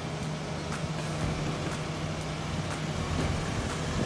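Mitsubishi Xpander's 1.5-litre four-cylinder engine running with a steady low hum as the MPV pulls away gently under a heavy load: seven people aboard and a second car on tow.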